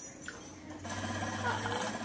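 A faint, steady low mechanical hum that stops shortly before the end.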